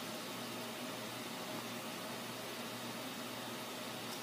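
Steady hiss of room tone, with no distinct event.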